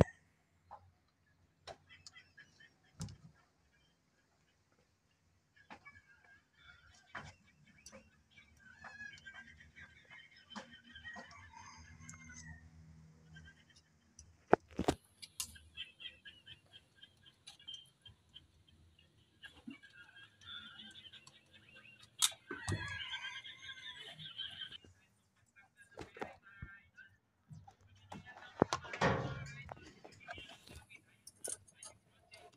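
Hand work on a vehicle's wiring with pliers: scattered sharp clicks and snips several seconds apart, the loudest about halfway through and again near the end.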